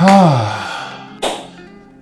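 A man lets out a long sigh-like vocal exhale whose pitch falls, then a short breath about a second later, over soft background guitar music.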